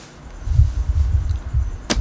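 A pause in speech filled by a low rumble, with one sharp click near the end.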